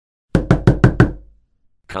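Five quick knocks on a bedroom door, evenly spaced in a rapid run lasting under a second.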